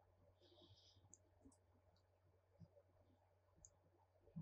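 Near silence: low room hum with a brief soft rustle and a few faint ticks of a crochet hook working cotton yarn.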